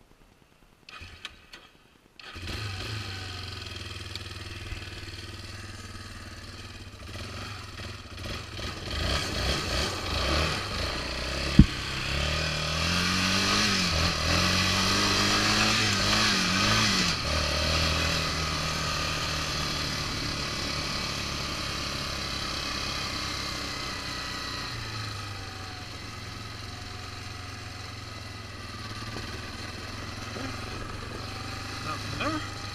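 Yamaha Raptor 350 ATV's single-cylinder four-stroke engine starting about two seconds in after a few clicks, then idling. It revs with the pitch rising and falling repeatedly as the quad pulls away and picks up speed, then settles to a steadier run. A single sharp knock comes about halfway through, louder than the engine.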